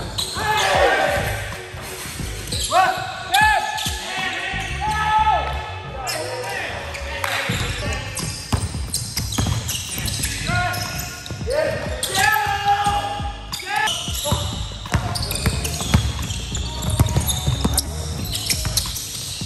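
Pickup basketball game on a hardwood court in a large gym: a basketball bouncing on the wooden floor, with repeated sneaker squeaks as players cut and stop.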